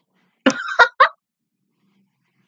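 A woman's short cough-like vocal outburst: three quick throaty bursts, the first the longest, starting about half a second in and over within a second.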